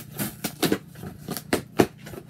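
Cardboard shipping box being torn open by hand along its tear strip: a quick series of short, sharp rips.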